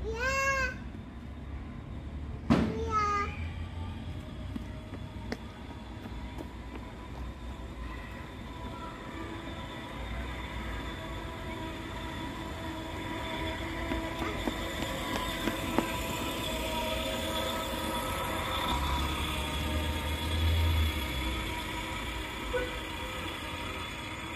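Two short vocal sounds from a young child near the start, the second after a sharp knock, then a steady mechanical drone of several tones over a low rumble, swelling a little in the second half.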